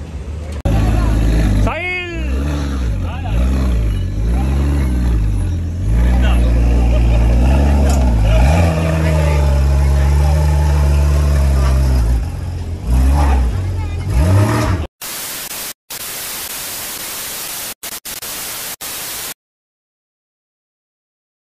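A superbike engine being revved, the throttle blipped again and again so the pitch rises and falls, then held at a steady higher rev before it stops about 15 seconds in. An even hiss with several brief dropouts follows, and the sound cuts out near the end.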